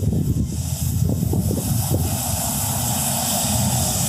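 A bus passing close by: a low engine rumble with tyre and road hiss that grows louder from about halfway through as it draws near.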